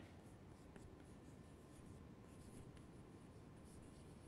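Faint scratching and light taps of chalk writing on a chalkboard.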